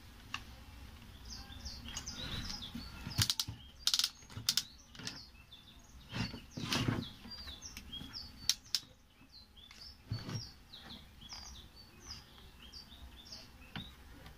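Knocks and clatter of an electric planer's casing and parts being handled during disassembly, loudest from about three to seven seconds in. Small birds chirp in quick, short repeated calls throughout.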